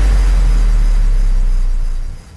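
Tail of a radio show's closing jingle: a deep, steady sub-bass rumble with a faint hiss above it, beginning to fade near the end.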